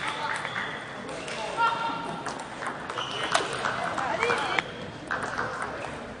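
Singles rally in a sports hall: sharp hits at irregular intervals and short squeaks of shoes on the court floor, over the chatter of voices in the hall.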